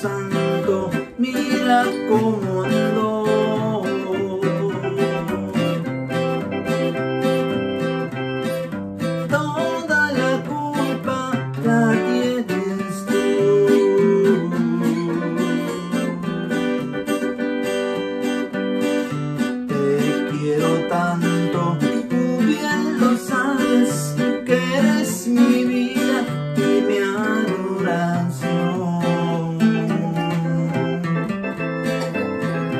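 Acoustic guitar playing an instrumental chicana: a plucked melody over evenly alternating bass notes, in a steady dance rhythm.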